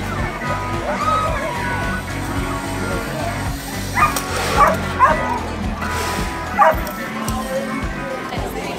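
Music with a steady beat, and a dog barking sharply about four times between about four and seven seconds in.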